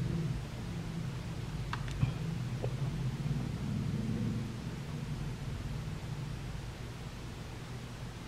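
Quiet room noise: a low steady hum, with one faint click about two seconds in.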